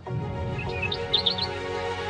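Soft music beginning, with birdsong chirps laid over it: a couple of short chirps, then a quick run of four about a second in.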